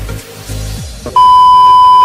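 Background music with a bass beat, then about a second in a loud, steady, single-pitched beep: the TV colour-bars test-tone sound effect added in editing.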